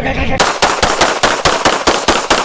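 Rapid gunfire: a fast string of sharp shots, about seven a second, starting about half a second in, after a short laugh.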